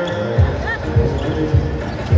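Basketballs bouncing on an indoor court as several players dribble, over music with a steady beat a little under two per second. A short high squeak comes a little past halfway.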